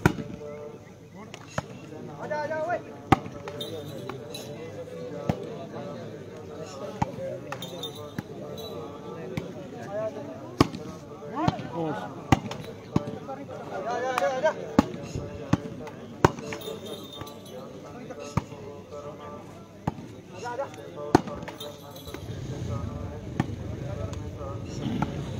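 Sharp smacks of hands striking a shooting volleyball during a rally, irregular and every second or two, with players and spectators shouting between hits.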